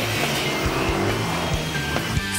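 Engine whine of futuristic hover racing machines speeding along a track, over rock background music with a steady beat.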